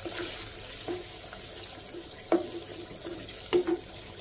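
Tomato sauce sizzling and bubbling with a steady hiss in a nonstick frying pan, with a wooden spatula knocking against the pan a few times, sharpest about two and a half and three and a half seconds in.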